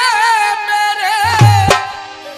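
Male folk singer holding one long sung note with a wavering vibrato over a harmonium. A deep drum stroke comes about a second in, then a sharp slap, and the note fades away near the end.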